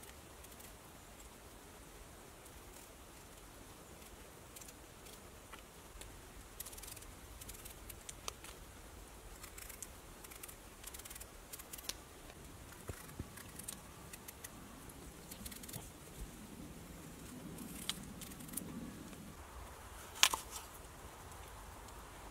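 Knife peeling a raw potato by hand: faint, irregular scraping strokes of the blade through the skin, with small clicks. One sharper click stands out near the end.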